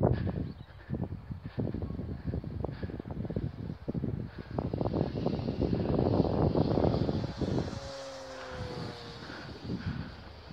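Wind buffeting the microphone in gusts throughout. About eight seconds in, the electric motor and propeller of an RC Spitfire model can be heard as a thin whine that slides down in pitch as the plane passes.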